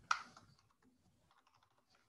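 Faint typing on a computer keyboard: a string of light key clicks, the first one sharper and louder than the rest.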